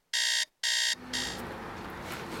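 Electronic alarm beeping: short, even, high-pitched beeps about two a second, stopping about a second in, followed by a faint steady background noise.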